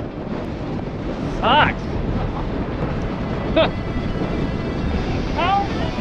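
Strong inflow wind blowing into a supercell buffets the microphone with a steady, dense low rush; the speaker puts its speed at about 50 to 60 miles an hour, severe-level gusts. Three short vocal sounds break through, the loudest about a second and a half in.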